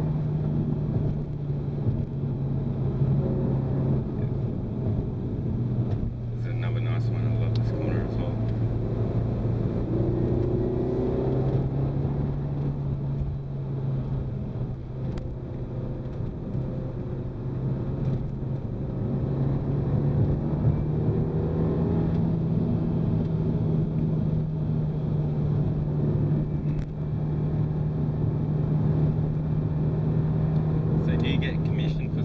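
Renault Mégane RS 250's turbocharged 2.0-litre four-cylinder engine heard from inside the cabin while driving along a winding road. Its engine note drops about four seconds in, then climbs back up and rises gradually through the second half.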